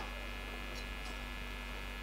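Faint, steady electrical hum of fixed tones, with nothing else over it.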